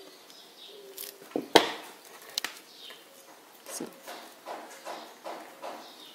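Sharp clicks and taps of pliers bending the end of a steel memory wire into a small closing loop, the loudest click about one and a half seconds in, followed by softer handling taps.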